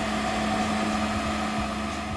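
Walk-behind automatic floor scrubber running: a steady motor hum with a whine over a rushing noise.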